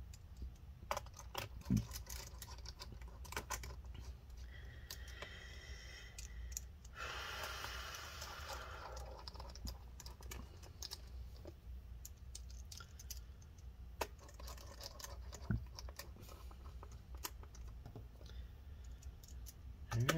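Small screwdriver driving screws back into a laptop's aluminium bottom cover: faint, scattered light clicks and ticks of the driver tip on the screws and metal. A short stretch of rasping noise comes near the middle.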